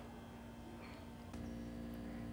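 Faint room tone: a low steady hum with a few thin steady tones, stepping up slightly a little over a second in.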